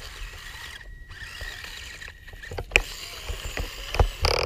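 Small electric motor of a Losi Micro 1:24 rock crawler whining steadily as it crawls over rocks, with scattered clicks and a sharp knock about two-thirds of the way through.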